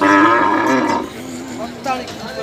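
One of the tethered zebu cattle moos once. It is a loud call about a second long that starts suddenly, and quieter voices follow it.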